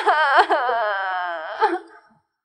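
A woman crying aloud in one long wail, her voice catching in quick sobs in the first half second, then trailing off near the end.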